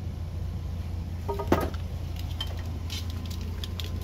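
Clicks and light rattles of trailer hitch hardware being handled: safety chains and the trailer-light wiring cable at the tongue. One sharp click comes about one and a half seconds in, and several lighter clicks follow in the second half, over a steady low hum.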